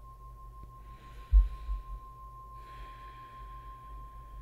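Brass singing bowl ringing on with one steady tone that slowly dies away. Two soft hissing noises and a low bump about a second in sit beneath it.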